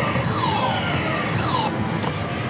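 Pachislot machine electronics playing its game music and effects: two falling tones about a second apart over the steady din of the slot hall.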